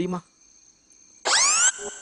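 A short, loud whistle-like sound effect that glides quickly upward in pitch for about half a second, starting a little over a second in.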